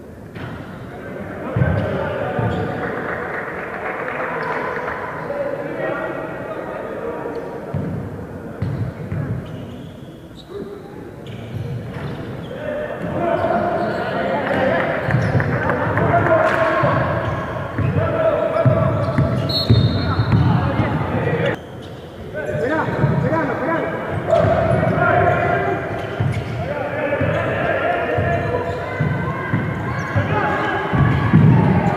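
A basketball bouncing on a gym court during play, with repeated dribbles, over players and spectators calling and shouting in the hall.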